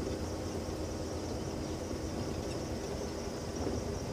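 Open safari game-drive vehicle driving along a dirt track, heard from on board: a steady low hum of the running engine and the moving vehicle.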